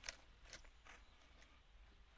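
Near silence: faint outdoor background with a few faint light ticks.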